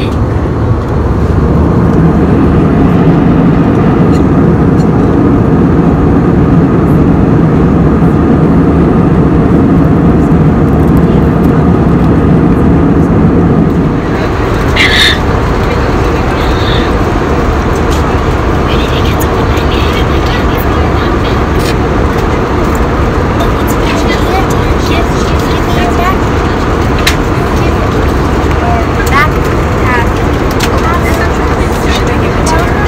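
Steady low rumble of jet engines and rushing air inside an airliner cabin in flight, picked up by a phone's microphone. About halfway through, the deeper hum drops away and the noise becomes slightly quieter.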